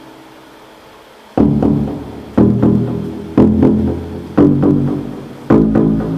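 Electronic music from a Nord Micromodular synthesizer and a TR-808-clone drum machine, played through a gestural MIDI glove in D Dorian. A soft held tone gives way, about a second and a half in, to a loud pitched stab with deep bass about once a second, each one fading before the next.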